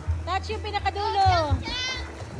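Children shouting and squealing in high voices while they play, with a long falling cry around the middle.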